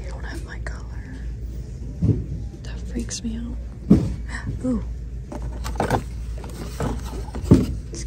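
Handling noise from a phone held while shopping: a few short knocks and rustles as items are taken off the pegboard, over a steady low hum, with faint murmured speech.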